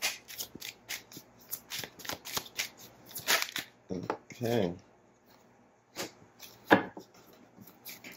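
A tarot deck being shuffled by hand: a quick run of card clicks for about three and a half seconds. Then comes a short vocal sound falling in pitch, and a card is snapped down onto the table, sharply and loudly, a little before the end.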